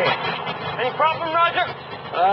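A car engine running, fading under a man's voice that starts about a second in.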